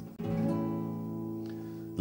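Acoustic guitar: a chord strummed a moment in and left ringing, slowly fading, as the intro of a song.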